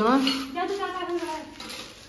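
A child's voice: one drawn-out, wordless sound that rises in pitch at the start, holds, and fades away.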